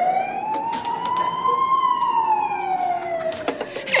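A single siren wail, rising slowly in pitch and then falling, used as an ambulance siren.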